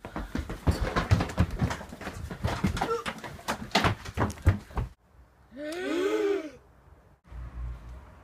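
Rapid, irregular knocking and scuffling for about five seconds, stopping abruptly. After a short gap comes one wavering wail that rises and falls for about a second.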